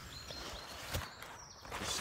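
Soft rustling of hammock and sleeping-bag fabric and handling noise as the camera is moved over them, with a light knock about a second in.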